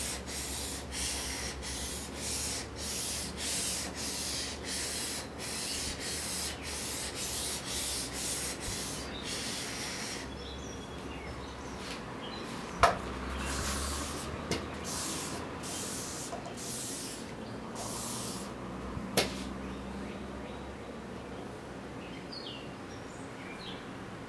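Drawknife blade being rubbed back and forth on a wet 800-grit waterstone, about two strokes a second for the first ten seconds. After that come a few fainter, scattered strokes and two sharp knocks as the knife is lifted and handled.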